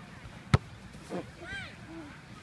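A single sharp thump of a foot striking a soccer ball in a bicycle kick, about half a second in, with faint voices after it.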